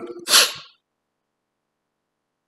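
A man's single short, breathy laugh, one puff of air through the nose and mouth.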